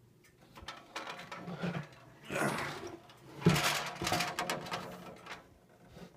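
Handling noise from the plastic box fan being moved and shifted: rustling and scraping, with a sharp knock about halfway through followed by a second or so of clattering and rubbing.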